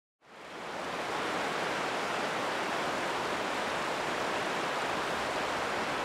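Steady rushing wash of water on a rocky tidal shore, fading in over about the first second and then holding even, with no rise and fall of separate waves.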